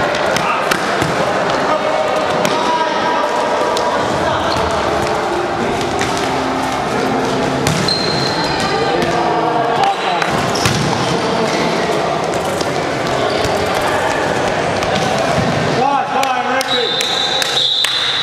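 Indoor five-a-side football in a reverberant hall: the ball being kicked and bouncing in repeated sharp knocks, with players calling out over one another. Near the end a long steady high-pitched tone starts.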